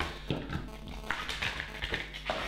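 Clear plastic blister packaging clicking and crackling as a plastic wireless charging pad is handled and lifted out of it: several short, sharp clicks of plastic against plastic.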